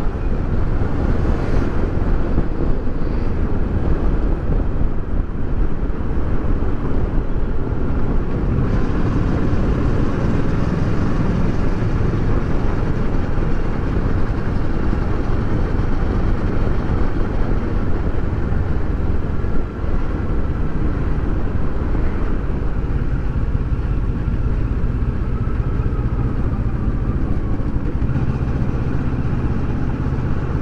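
A Kawasaki Versys 650's parallel-twin engine running steadily as the motorcycle is ridden at road speed, heard from the bike itself.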